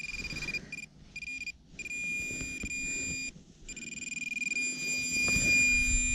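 Handheld metal-detecting pinpointer probe sounding a steady high-pitched alert tone while pushed through dug soil, cutting out briefly a few times: it is close to a metal target in the hole. Soft rustling of soil under it.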